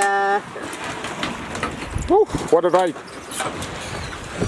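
Speedboat motor running and the propeller churning water as the boat pulls away from the jetty, with short calls of voices at the start and about two seconds in.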